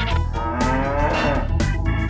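One drawn-out cattle moo, about half a second to a second and a half in, over upbeat theme music with a steady beat.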